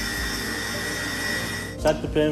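Electric meat grinder running steadily with a constant motor whine while mincing meat and pickled cucumbers; it cuts off suddenly near the end.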